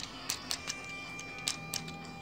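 Plastic parts of a knockoff Transformers Ironhide action figure clicking as they are worked by hand during its transformation: about six short, sharp clicks, over faint background music.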